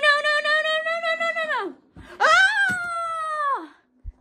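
A girl's voice letting out two long frightened screams, each held about a second and a half and dropping in pitch as it trails off.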